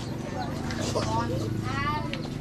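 Voices of a group of people talking, indistinct, over a steady low hum.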